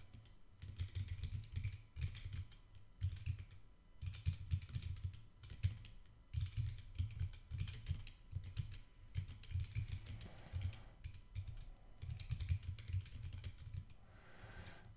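Typing on a computer keyboard in irregular flurries of keystrokes with short pauses between them.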